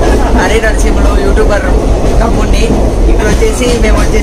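Loud, steady low rumble of a moving passenger train, heard from inside the coach, with voices over it.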